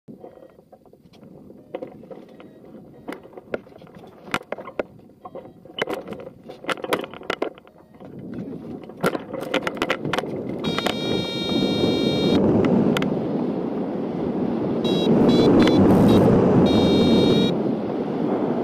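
Scattered clicks and knocks from the hang glider and harness on the launch ramp, then a rush of wind over the glider-mounted microphone that grows loud from about halfway as the glider launches and picks up speed. A variometer's electronic tone sounds for a couple of seconds in the middle, and it beeps in short repeated bursts near the end.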